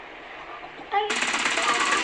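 A loud, rapid rattling noise starts about a second in, after a quieter first second.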